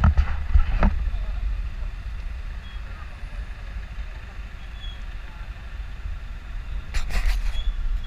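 Night-time city street ambience: a steady low rumble of traffic, with brief voices about a second in and again near the end.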